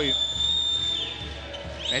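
A shrill, steady whistle held for about a second that falls away, then starts again near the end, over a low arena din and a basketball being dribbled on the hardwood.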